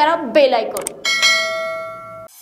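A bell-chime sound effect for a subscribe-and-bell-icon animation: one strike about a second in, ringing with several bright overtones and slowly fading.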